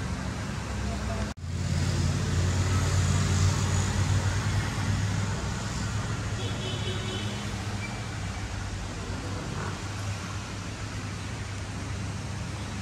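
Street ambience: a steady low rumble of traffic with indistinct voices in the background, broken by a brief dropout a little over a second in.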